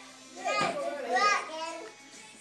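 A toddler's wordless vocalizing: two high calls that rise and fall in pitch, about half a second and a little over a second in.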